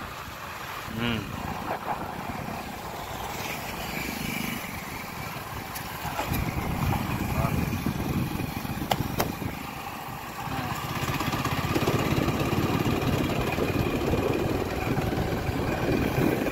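Motorcycle riding along a road: the engine running under a steady rush of wind on the microphone, growing louder about six seconds in and again near twelve seconds as the bike picks up speed.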